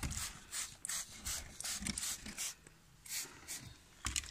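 Hand-held plastic trigger spray bottle squeezed again and again, giving short hissing squirts about three or four a second, with a brief pause a little past halfway.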